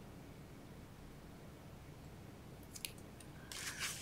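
Faint room tone, with a couple of small clicks nearly three seconds in, then cardstock rustling near the end as a paper panel is handled and laid down.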